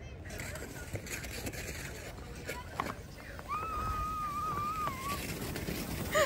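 A voice in the distance holds one long, high 'woo' call for about a second and a half, starting past the middle, over steady outdoor background noise.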